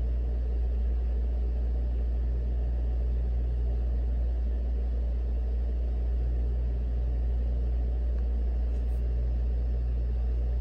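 A steady, even low rumbling hum with no speech and no changes. It is the continuous background noise under the recording.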